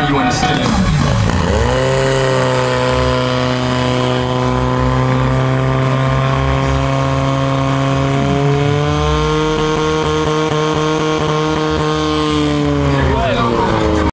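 Engine of a portable fire pump running steadily at a constant pitch; its pitch falls in the first second or so, then holds, shifting slightly about halfway through and stopping just before the end.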